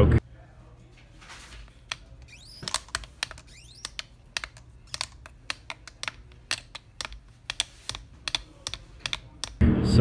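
Broken Removu handheld camera gimbal giving an irregular run of sharp clicks as it jerks, with a short rising whine about two and a half seconds in.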